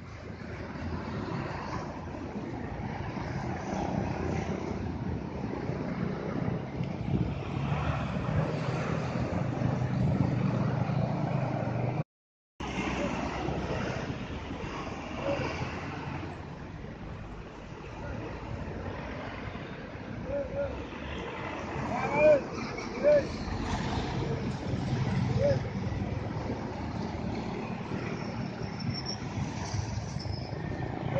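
Diesel tour bus engine rumbling as the bus rounds a bend, growing louder over about twelve seconds. After a sudden cut, more buses and trucks approach with road noise, and two short loud sounds come close together a little past the middle.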